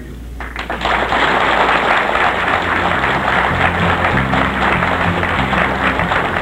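Audience applauding, a dense crackle of clapping starting just after the speech ends. About halfway through, the instrumental introduction of a song comes in underneath, with bass notes moving step by step.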